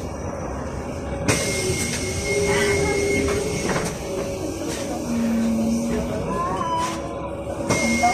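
Cabin sound of a Sinara 6254.00 trolleybus: a steady hum with a constant mid-pitched whine. About a second in, a hiss and a high steady tone come in suddenly; they drop out briefly near the end and return.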